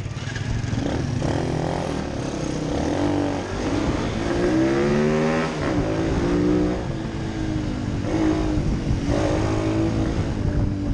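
Small single-cylinder pit bike engine being ridden hard, its pitch climbing as it accelerates about four seconds in, dropping away, and rising again near the end. Wind rushes on the helmet microphone throughout.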